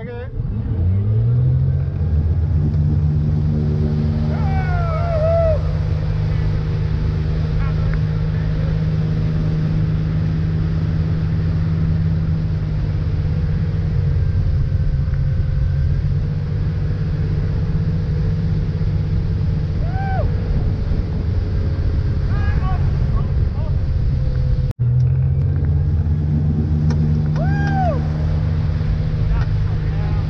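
A tow boat's engine revs up from idle as it pulls a wakeboarder up out of the water, then runs steadily at towing speed over the rushing of the wake. Most of the way through, the sound breaks off abruptly and the engine climbs again. A few short voice calls rise and fall in pitch over the engine.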